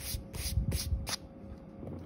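An eraser rubbing back and forth on sketch paper, with about four quick strokes in the first second, then softer rubbing.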